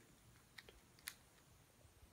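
Near silence with a few faint clicks of calculator keys being pressed, about half a second to a second in.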